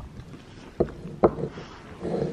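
A horse nosing at a plastic cup held to its muzzle, making two short muffled sounds about half a second apart.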